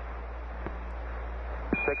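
Steady radio-link hiss over a low hum. Near the end a brief high beep, the Quindar tone that keys a Mission Control transmission, sounds together with the start of a man's voice.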